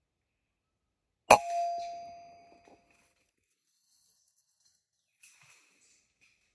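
A single air rifle shot about a second in: a sharp crack followed by a metallic ring that fades over about a second and a half. A few faint clicks near the end.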